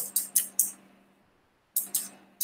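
Computer keyboard keys tapped: four quick clicks in the first half second or so, then a pause, then two more near the end, over a faint steady hum.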